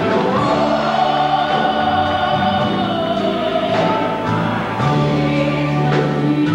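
Gospel choir singing, with a woman soloist's amplified voice over it, holding long sustained notes.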